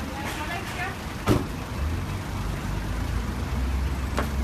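Street noise with a low, steady engine rumble from a road vehicle that sets in about two seconds in. A single sharp knock comes a little after a second, and a few voices are heard at the start.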